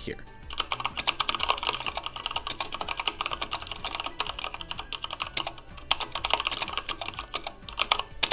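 Steady, fast typing on a NightFox mechanical keyboard with Cherry MX Brown switches, PBT keycaps and an aluminium case: a dense run of keystrokes that starts about half a second in and stops just before the end.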